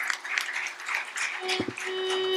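Audience clapping, and about one and a half seconds in a violin starts a long held note as the Carnatic accompaniment begins, with a brief low thump at the same moment.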